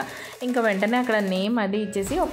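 A song with a singing voice holding drawn-out notes, with a short dip in the voice just after the start.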